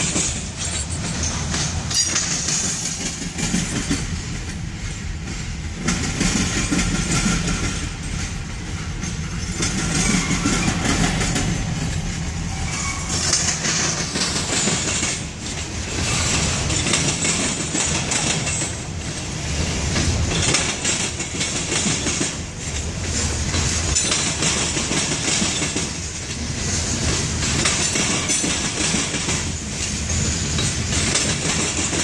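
Covered hopper cars of a freight train rolling past, steel wheels clacking over the rail joints with a continuous rumble that swells and dips as each car goes by.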